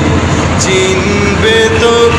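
Boat engine running steadily, with men's voices holding long sung notes over it.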